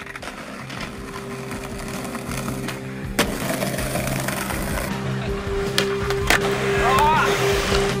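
Skateboard wheels rolling over brick paving, a rough rumble that sets in about three seconds in and grows, with a few sharp clacks of the board, over steady held musical tones.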